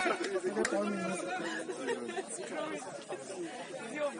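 Indistinct chatter of several people talking at once, their voices overlapping.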